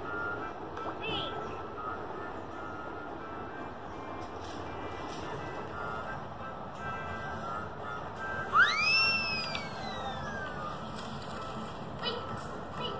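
Low music and voices playing from a tablet's speaker, with a short melody that comes and goes. About eight and a half seconds in comes the loudest sound, a clear whistle-like tone that shoots up in pitch and then slides down over about two seconds.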